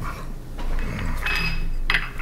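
Small ceramic dishes and metal spoons clinking on a stone countertop. A thin ringing tone sounds through the second half, and a sharp click comes just before the end.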